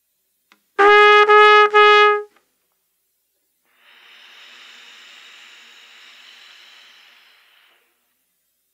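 Solo trumpet playing three short, loud repeated notes on one pitch about a second in, then after a pause a quiet, breathy, airy sound with faint pitch in it lasting about four seconds.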